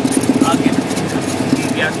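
Single-engine propeller airplane's piston engine idling steadily during taxi, a low pulsing hum heard from inside the cockpit.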